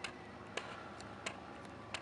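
A handful of short, sharp clicks, about six in two seconds at uneven spacing, over a faint steady background.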